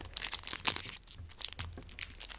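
Foil wrapper of a Pokémon TCG Evolutions booster pack crinkling and tearing as it is opened by hand. A dense crackle fills the first second, then fainter, scattered crinkles.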